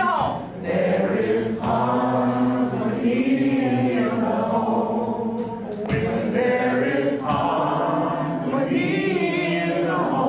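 A group of voices singing a cappella together in slow, long-held notes, with short breaks between phrases.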